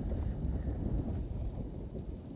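Wind on the microphone: a low, uneven rumble with no other sound standing out.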